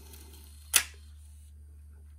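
A single sharp plastic click, under a second in, from a MiniDV camcorder's cassette compartment as the tape cassette is taken out of its holder.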